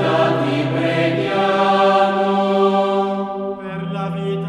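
Background music: a sung chant of long held vocal notes that move in steps over a steady low drone.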